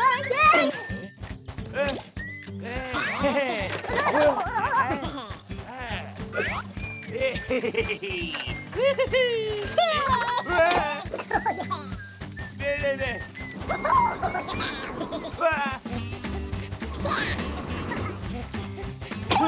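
Cartoon background music under wordless, gibberish character voices: gasps and cries of alarm.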